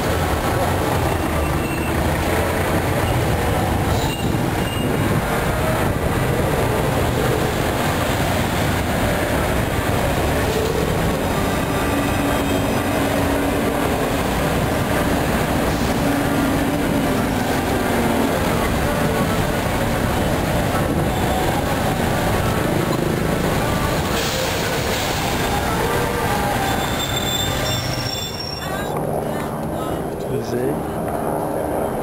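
Busy city street traffic: a city bus pulling away from its stop and cars passing, a steady, dense din of vehicles.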